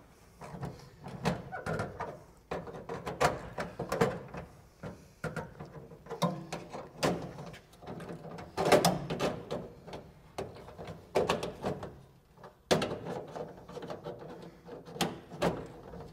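Ratchet handle clicking in short runs as it turns a bush-fitting tool, screwing 38 mm brass short-reach conduit bushes into metal trunking, with sharp knocks of metal on metal as the tool is seated and moved between bushes.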